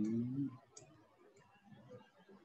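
A short voiced sound from a person at the start, then a single faint click, over quiet room tone.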